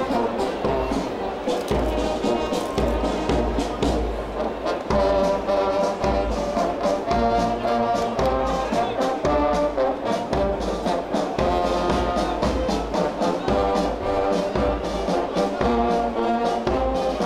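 Brass band playing a march-like piece, with a steady drum beat under the brass.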